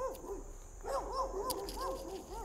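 An animal calling: a quick series of short rising-and-falling notes, about four a second, some overlapping.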